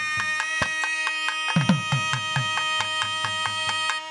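A pair of nadaswarams holding one long, steady note over a drone, with thavil drum strokes coming in about one and a half seconds in and keeping a regular beat. Near the end the reeds break off, leaving the drums.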